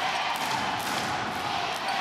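Arena crowd noise with a basketball being dribbled on the hardwood court, a few short bounces heard through the steady crowd sound.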